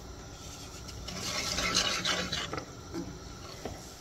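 A scraping noise in a cast-iron skillet of rice and broth, rising about a second in and fading before three seconds, as salt goes in and the mixture is worked.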